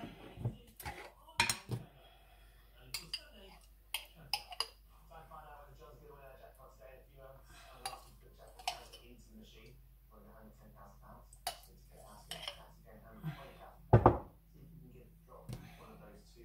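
Scattered clinks and knocks of kitchen utensils as ingredients are spooned into a food processor's plastic bowl: a spoon against a jar and the bowl, and a jar and lid set down on the bench. The loudest knock comes near the end.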